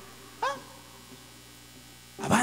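A pause: a low steady hum under the fading reverberation of the hall, broken about half a second in by one short, high, yelp-like call whose pitch rises and falls.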